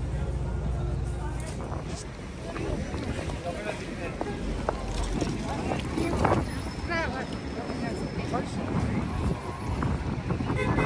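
Busy city street ambience: passers-by talking, traffic running and wind on the microphone.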